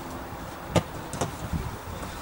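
Two sharp thuds of a football being kicked, about half a second apart, over steady outdoor background noise.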